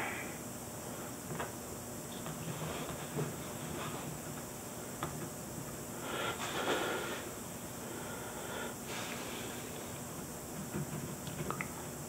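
Ballpoint pen drawing on paper, faint scratching strokes that come and go, a little louder about halfway through.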